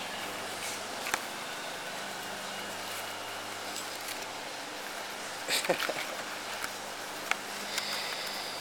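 Faint clicks and rustles of hands working the string-and-button tie of a paper envelope, over a steady low hum, with a short laugh a little past halfway.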